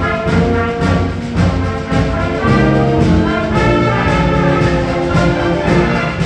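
Concert band playing, brass to the fore over woodwinds and a steady low bass line, the notes held and changing without a break.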